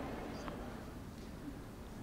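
Faint, steady background noise of a tennis stadium crowd, with a light tick about half a second in.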